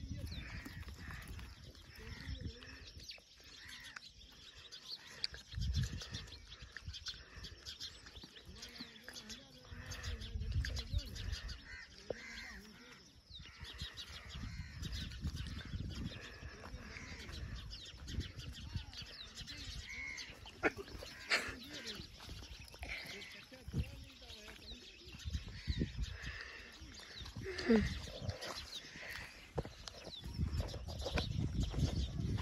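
Livestock bleating calls now and then, with birds chirping and bouts of low rumble on the microphone.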